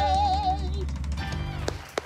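The last held note of a sung song, with wide vibrato, fades out about half a second in while the accompaniment's closing chord rings on. Scattered claps and sharp hand-clap hits follow in the second half as applause starts.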